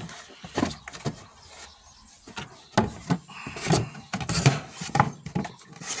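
A beehive divider board being slid down into a wooden hive box, scraping and knocking against the wooden frames and box sides in a series of irregular knocks.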